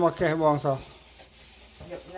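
Rubber-gloved hands rubbing and scrubbing a plastic lid at a sink. A louder pitched sound fills the first second, then the rubbing goes on more quietly.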